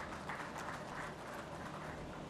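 Light, scattered applause from a small audience, fairly faint.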